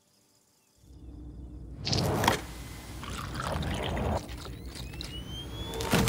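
Near silence for about a second, then liquid pouring and splashing, with a few louder gushes and a thin rising tone near the end.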